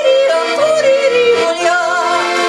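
A woman yodeling, her voice leaping back and forth between low and high notes, over her own Pilzweger piano accordion playing held chords with bass notes about twice a second.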